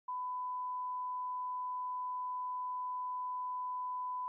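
Broadcast test tone played under a holding card: a single pure tone held at one steady pitch and level without a break.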